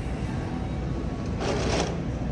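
Steady low hum of a large store's background noise, with a short hissing noise about one and a half seconds in.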